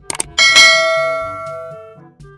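Subscribe-button sound effect: two quick clicks, then a bright notification-bell ding that rings out and fades over about a second and a half.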